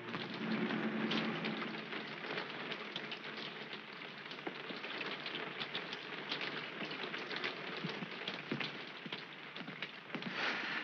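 Steady rain falling, a dense hiss with many sharp drop spatters throughout.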